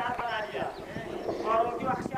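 Speech only: a raised voice addressing the gathering, with some vowels held long, and no other sound standing out.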